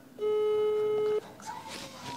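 A smartphone call tone: one loud, steady electronic beep lasting about a second that cuts off suddenly.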